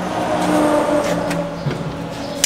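A steady mechanical hum with a few held tones, which fades near the end.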